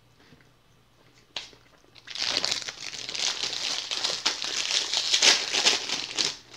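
Plastic wrapper of a packaged honey bun crinkling and crackling as it is handled and torn open, starting about two seconds in after a single light click.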